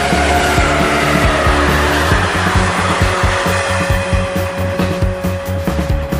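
Rock music over the sound of an electric freight train passing at speed, its pitch falling over the first few seconds as it goes by.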